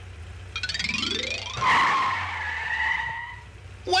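Cartoon vehicle sound effects: over a steady low engine drone, a rising whine climbs for about a second, then a loud tire screech breaks in about a second and a half in and slowly falls away.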